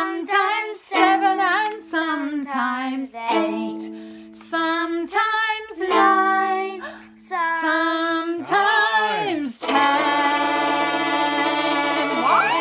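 A woman singing an old-time children's song over plucked fiddle strings, with a rising-and-falling vocal swoop near the end and then a long held note.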